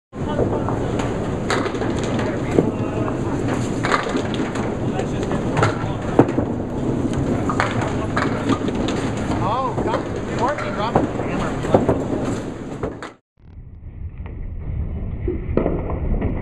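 Candlepin bowling alley din: balls rolling down the lanes, with pins clattering again and again on several lanes and voices in the background. Just after 13 seconds it cuts out briefly and comes back duller and muffled.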